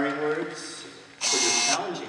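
Brief men's speech that was not caught as words, a short exchange with a louder, hissy syllable a little past the middle.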